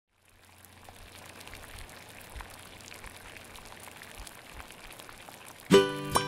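Soft water sound, trickling and bubbling with small drip-like ticks, fading in over the first second. Near the end, plucked-string music starts suddenly and loudly.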